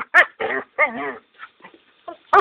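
A dog giving three short, pitched vocal sounds in quick succession in the first second, then fainter ones, as it tugs at a hanging vine.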